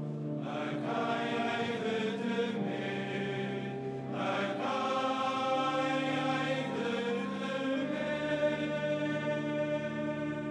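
Male choir singing a psalm in several-part harmony: slow, held chords that move to new notes every second or two.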